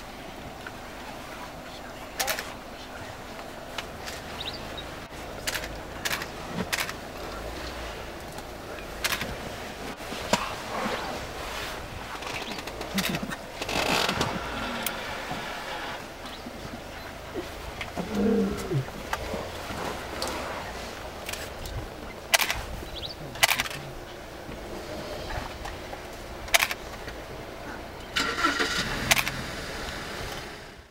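Vehicle engines running at idle, a steady low rumble, with low voices and scattered sharp clicks.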